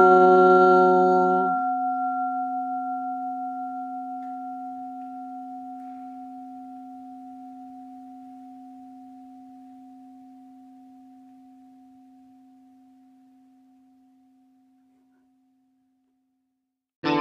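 A Buddhist bowl bell rings out and slowly fades away over about fourteen seconds, its tone pulsing gently as it dies. The last held note of the sutra chant stops about a second and a half in.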